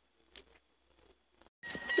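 Near silence: quiet room tone with one faint click, then an abrupt switch to louder outdoor noise in the last half second.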